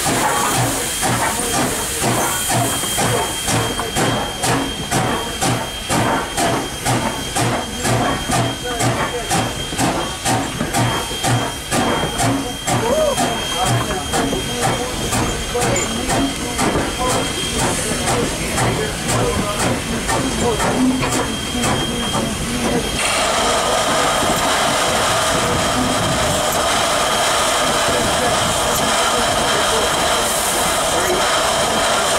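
Canadian National 89, a 2-6-0 steam locomotive standing still, with its steam-driven air pump panting at about two beats a second over a background hiss of steam. About 23 seconds in, a louder, steady hiss of escaping steam takes over.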